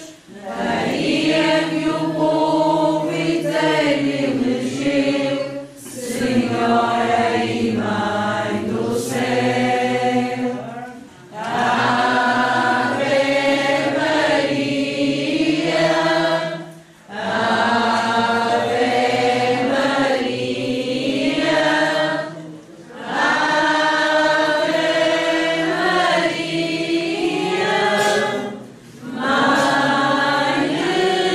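A group of people singing a religious hymn together, in sustained phrases of about five to six seconds with brief breaks between them.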